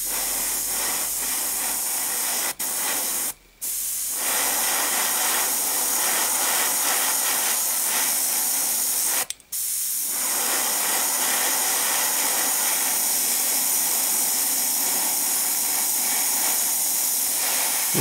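Gravity-feed airbrush spraying thinned acrylic paint: a steady hiss of air and paint that stops for a moment three times, at about two and a half seconds, about three and a half seconds and about nine seconds in.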